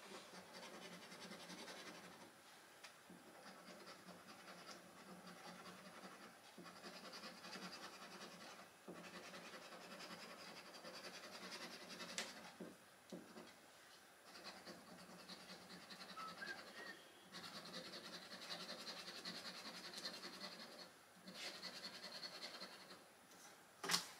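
A small round scratcher rubbing the coating off a paper lottery scratchcard. It goes as faint scratching in spells of a few seconds, with short pauses between panels.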